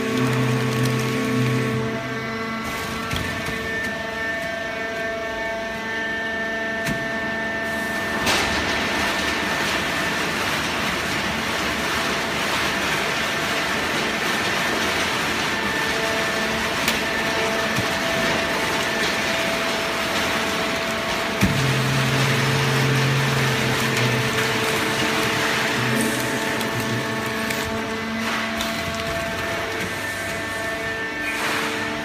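An automatic horizontal hydraulic baling press for shredded paper running with a steady mechanical hum. A rushing noise swells from about eight seconds in. A sharp knock comes a little after twenty seconds, followed by a low hum.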